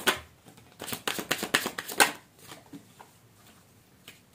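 A deck of oracle cards being shuffled by hand: a quick run of crisp card clicks and flutters that stops about two seconds in.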